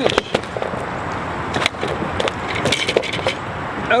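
Irregular sharp knocks and slaps of a bowfin flopping on the wooden dock boards.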